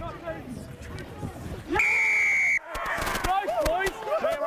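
Referee's whistle: one steady, loud blast lasting just under a second, starting a little under two seconds in, blown for the try scored from the driving maul.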